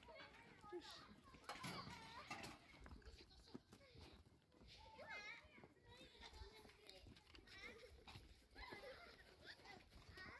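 Faint, scattered calls: distant voices and occasional bleats from young goats and lambs.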